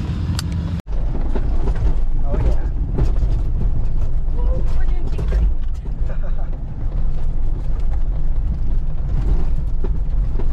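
Cabin noise inside a diesel Jeep driving over a desert dirt trail: a steady, heavy low rumble of engine and tyres, with many small knocks and rattles from the body and interior.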